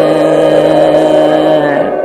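Kabyle song with a male voice holding one long sung note over the accompaniment; near the end the note slides off and the music falls quieter.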